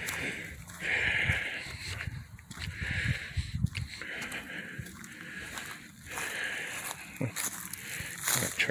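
Footsteps crunching through dry leaf litter on a woodland path, with irregular rustles and soft thumps as the walker moves.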